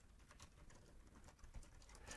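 Faint keystrokes on a computer keyboard: quick, irregular taps of someone typing.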